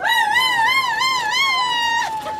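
A high, warbling siren wail that settles into one long tone falling slowly in pitch.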